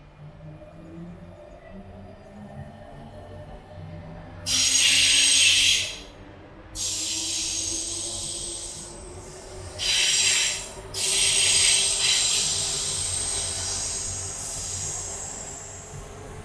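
Paris Métro line 6 rubber-tyred train running over the Bir-Hakeim viaduct, its motor whine slowly rising in pitch. Over it come four loud, high-pitched squealing hisses, starting about four and a half seconds in; the first is the loudest.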